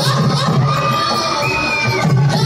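Children shouting and cheering over a drum beat, with one high held shout near the end.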